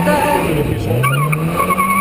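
Classic Mini's four-cylinder engine revving hard on a slalom run: its note drops back just after the start, then climbs steadily and holds. Tyres squeal from about a second in as the car corners.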